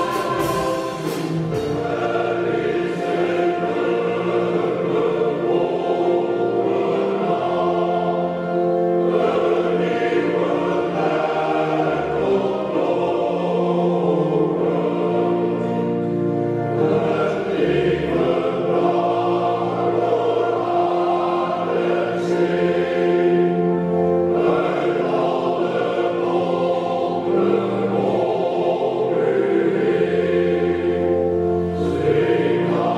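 A choir singing in several voice parts, holding long chords without a break.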